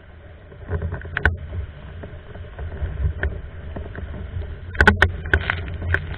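A Hypersonic windsurf board sailing over choppy lake water: a steady low rush of water and wind, with sharp slaps as the hull hits the chop, about a second in, around three seconds, and a quick cluster near five seconds.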